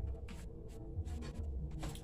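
Several short, scratchy rubbing noises over a low hum and quiet background music.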